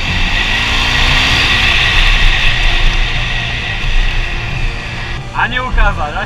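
Motorcycle riding on a dirt track, heard from the rider's helmet camera: wind noise rushes steadily over the engine, whose pitch rises over the first second or so. Near the end a voice laughs and exclaims.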